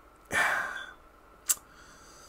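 A man sighing: one long breathy exhale about a third of a second in, followed by a short click about a second later.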